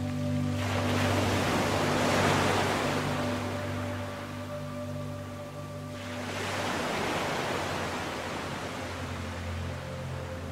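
Slow ambient music of sustained tones, with a soft rushing noise that swells and fades twice: about a second in, and again about six seconds in.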